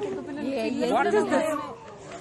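Speech only: voices talking over one another, growing quieter near the end.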